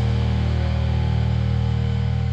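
Heavy metal band's final chord ringing out: electric guitars and bass holding one low chord at a steady level, with no drum hits.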